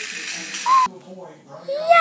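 Plastic toy car rolling fast across a tiled floor, a rattling hiss that stops just under a second in. A short voice-like call comes just before it stops, and a voice rises near the end.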